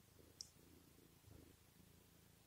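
Very faint purring from a black cat being stroked, with one small click about half a second in.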